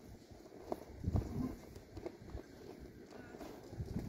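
Wind buffeting the microphone in irregular low rumbles and knocks.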